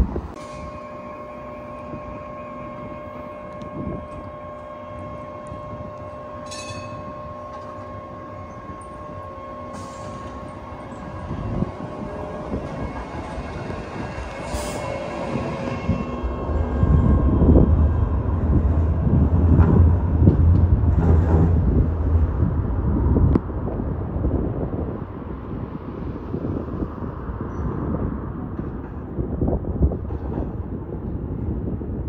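Sheffield Supertram trams: a steady electric hum with a few clear tones for the first ten seconds or so, then a tram passing close by with a loud low rumble of wheels on rail, loudest from about 17 to 23 seconds in, fading afterwards.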